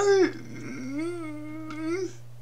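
A woman's voice speaking slowly, with a short falling syllable and then one long drawn-out vowel: the slurred, effortful speech of a woman with cerebral palsy.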